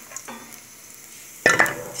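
Minced garlic sizzling gently in oil in an aluminium pan, the garlic already fried. About one and a half seconds in comes a sudden loud clatter.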